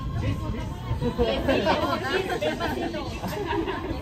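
Several guests talking at once in lively, overlapping chatter, with no single voice standing out.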